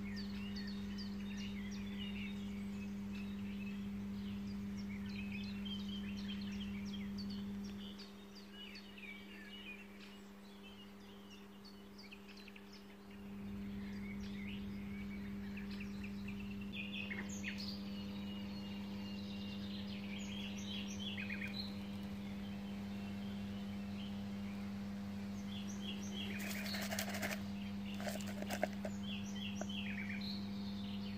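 Songbirds singing, many short chirps and calls all through, over a steady low hum that drops away for about five seconds about a third of the way in. A few sharp knocks near the end.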